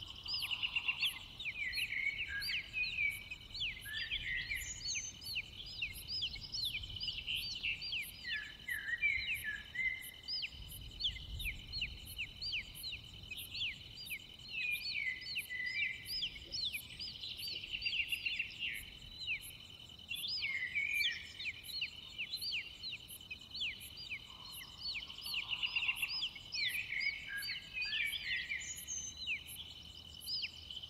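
Nature ambience of many birds chirping and singing over a steady trill of crickets or other insects, with a faint high pulse repeating about twice a second.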